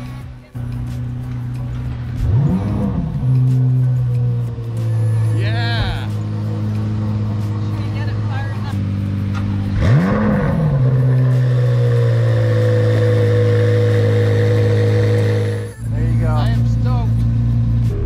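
Corvette V8 engines idling steadily, with two rev blips, about two and a half seconds in and again about ten seconds in, each rising and falling in pitch.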